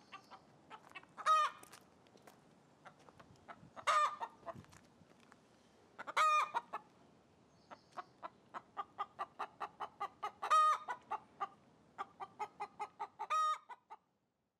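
Domestic hens clucking in runs of short, quick clucks, broken five times by a louder, drawn-out call.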